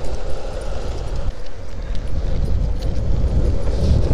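Skateboard wheels rolling fast over asphalt: a loud, steady rough rumble with a faint constant hum above it.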